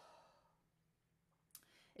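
A woman's soft, sigh-like exhale fading out, then near silence, broken about a second and a half in by a brief click of the mouth just before she speaks again.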